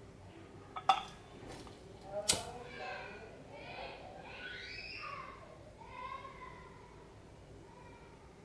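A hand-held lighter struck with two sharp clicks about a second and a half apart, the second the louder, lighting a flame to heat a dial thermometer. Faint voices follow in the background.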